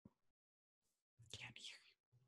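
Near silence where the video call's audio has dropped out, with a brief, faint whisper-like voice just past the middle.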